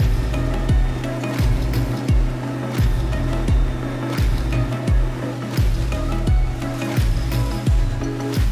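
Background music with a steady beat, a deep kick drum about every 0.7 s over a sustained bass line.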